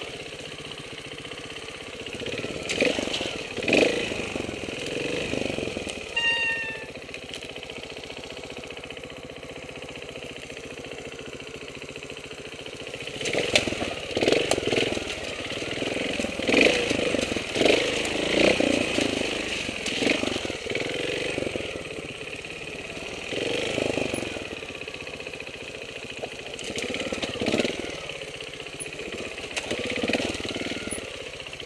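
Trials motorcycle engine heard from on board, opened up in repeated short bursts of throttle with lower running between, as the bike is picked through rough ground. A short high-pitched call comes about six seconds in.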